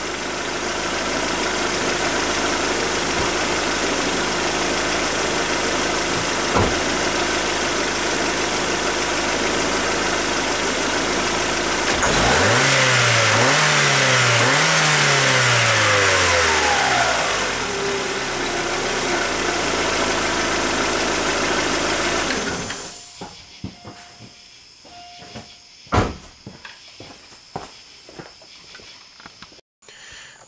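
2006 Suzuki Forenza's four-cylinder engine running steadily, blipped twice about twelve seconds in, rising and falling in pitch each time, then settling back. Roughly three-quarters of the way through the engine is switched off, and a single click follows.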